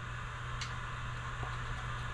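A couple of faint ticks from a poker-chip scratcher touching a scratch-off lottery ticket, over a steady low hum and hiss.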